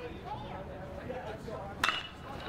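Metal baseball bat striking a pitched ball once near the end, a sharp crack with a short ping, fouled off. Faint ballpark crowd murmur underneath.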